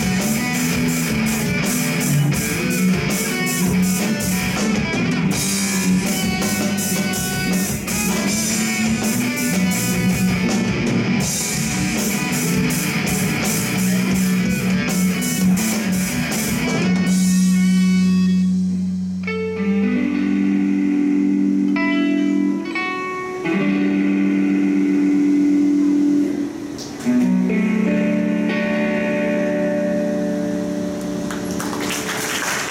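A rock band playing live: electric guitars, bass guitar and drum kit together, with the cymbals keeping a steady beat. About seventeen seconds in the drums drop out and the guitars carry on alone with long held notes that change every few seconds, closing the song.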